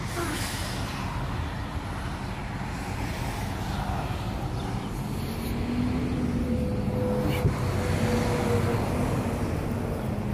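Steady road-traffic and vehicle engine noise with a low rumble. It grows a little louder about halfway through, when a faint engine hum comes in.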